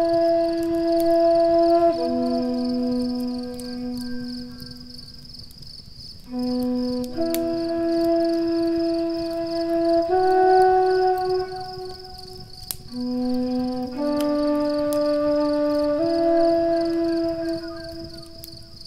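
Native American flute playing a slow melody of long held notes, with short pauses between phrases. A wood fire crackles softly underneath.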